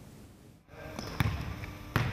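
Volleyball practice in a sports hall: after a brief quiet, echoing hall noise sets in, with sharp thuds of volleyballs, twice.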